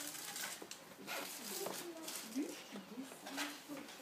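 Short, faint vocal sounds, several brief pitch glides with no clear words, over light rustling and clicks from the handheld phone.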